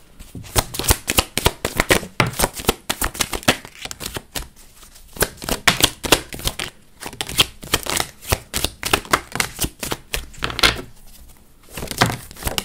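Tarot cards being shuffled and dealt out onto a wooden tabletop: a dense, irregular run of quick card flicks and taps, with a short pause near the end.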